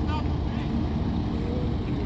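Engines of a Toyota Land Cruiser pickup and a Volkswagen Amarok idling steadily, just before a tug-of-war pull.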